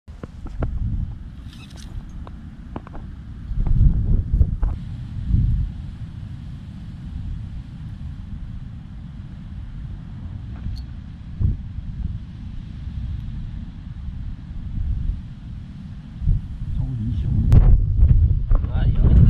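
Wind buffeting the microphone in gusts, a low rumble that surges around four seconds in and again near the end, with a few light clicks early on.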